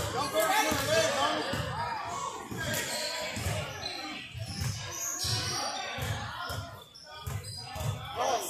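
A basketball bouncing on a gym's court floor, low thuds about twice a second that echo around the large hall, under the voices of players and spectators.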